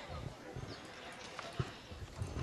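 Quiet pause with a few faint knocks and handling noise from a hand-held microphone held by a child, over low background murmur.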